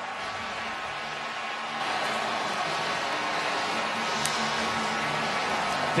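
Steady stadium crowd noise at a football game just after a touchdown: an even wash of many distant voices with no single sound standing out.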